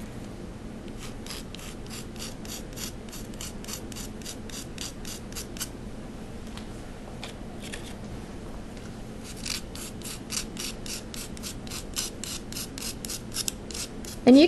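Craft knife blade scraping a chalk pastel stick in quick repeated strokes, about four a second, in two runs with a pause of a few seconds between.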